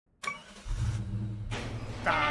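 Cartoon car engine sound effect: a short high tone at the start, then the engine starting and running with a steady low rumble.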